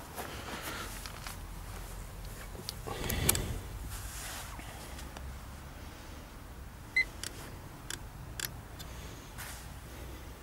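Handling clicks and a short high beep about seven seconds in as a Fluke 1625 earth ground tester is switched on and starts up, with a brief rustle of handling about three seconds in.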